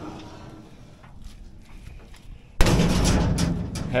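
A sheet-metal service door on a John Deere 690C excavator slamming shut with a loud bang about two and a half seconds in, followed by over a second of loud, rough noise.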